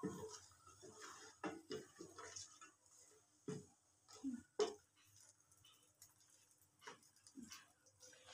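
Faint, scattered clicks and light knocks at an irregular pace, the sharpest about halfway through.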